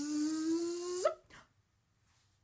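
A woman's voice imitating a bee with a long buzzing "bzzz", its pitch rising slowly and ending with a quick upward flick about a second in.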